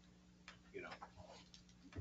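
Near silence: a steady low hum of room tone, with one faint sharp click about a quarter of the way in and a few quiet spoken words.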